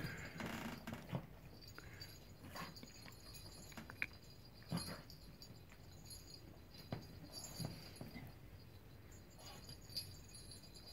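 Small poodle nosing and sniffing inside a plastic clamshell treat-puzzle toy: faint, scattered taps and knocks of the plastic at uneven intervals as the toy is pushed and handled.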